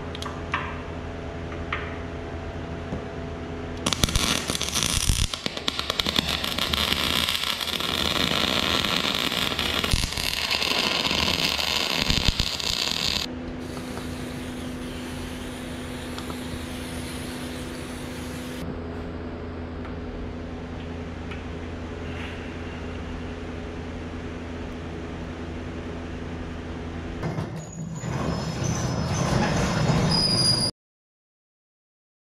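Arc welding a new hook onto a steel excavator bucket: a steady machine hum, then the welding arc crackling for about nine seconds. A spray can then hisses for about five seconds over the fresh weld, and the hum carries on after it.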